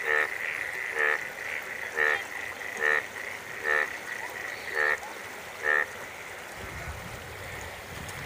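A frog croaking, seven short calls at about one a second, over a steady high-pitched tone. A low rumble comes in near the end.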